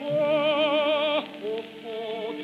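An operatic voice holds one high note with a wide vibrato over orchestral accompaniment and breaks off a little after a second in, leaving the orchestra. It comes from an early electrical 78 rpm Gramophone recording of 1931, with a narrow, dull top end.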